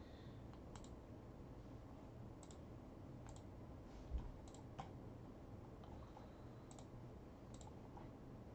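Faint, scattered clicks of a computer mouse, about six over several seconds, with one low thud about four seconds in. Otherwise near silence.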